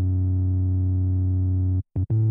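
Background electronic music: one sustained low synthesizer note that holds steady and then cuts off suddenly shortly before the end, followed by a short blip.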